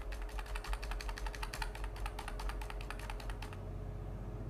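Computer keys tapped rapidly and repeatedly, several clicks a second, stopping about three and a half seconds in: stepping back through the moves of a chess game on screen.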